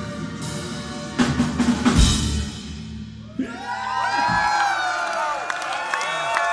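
A live metal band hits the final chords of a song, with drums and cymbals crashing together about a second or two in and ringing out. The crowd then breaks into cheering and whistling.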